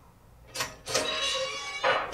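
Movie soundtrack played back in a small room: a sharp whip crack about half a second in and another near the end, with a hissing, ringing sound between them, from a public flogging scene.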